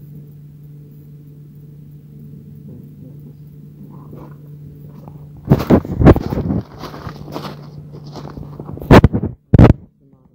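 A steady low hum, then, from about five and a half seconds in, loud knocks and rustling from the camera's microphone being handled and carried, with two more sharp knocks near the end.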